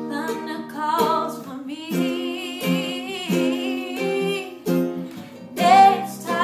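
A woman singing a slow melody over a strummed Martin acoustic guitar and a ukulele, with the voice rising to a loud held high note near the end.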